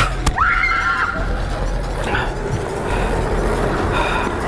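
A short, high-pitched squeal from a person, rising sharply and held for under a second, against steady street background noise.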